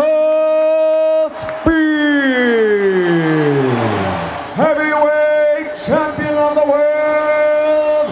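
A boxing ring announcer's voice drawing out a fighter's introduction in long held notes, one of them sliding down in pitch, with crowd noise rising behind it partway through.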